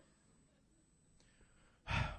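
Faint room tone, then near the end a man's loud sigh, a breath pushed straight into a podium microphone.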